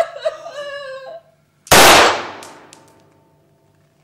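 A voice trails off, then about two seconds in a single loud gunshot cracks out and rings away over a second or so.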